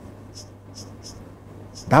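A pause between words filled by a steady low hum and a series of faint, short scratchy ticks, about two a second.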